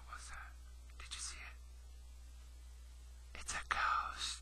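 A man whispering softly in a few short breathy bursts, the last one near the end louder, over a steady low electrical hum.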